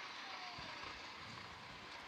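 Faint, steady outdoor background noise at a greyhound track, with a faint short gliding tone about half a second in.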